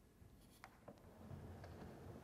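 Near silence: quiet room tone with a few faint clicks and a faint low murmur in the second half.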